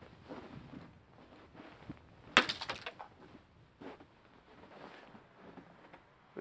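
A hammer with a pykrete (frozen water and newspaper) handle smashing a ball of ice on a concrete ledge: one sharp crack about two and a half seconds in, with a brief crackle of breaking ice right after and a smaller knock about a second later.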